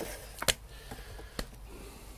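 Two short sharp clicks about a second apart, the first the louder, over a low steady hum.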